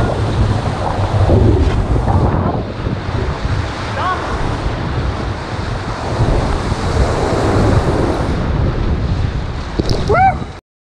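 Whitewater rapids rushing and splashing around a paddle raft as it runs the drop, with wind rumble on the microphone.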